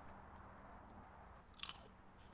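Near silence, broken by one short crunch about one and a half seconds in.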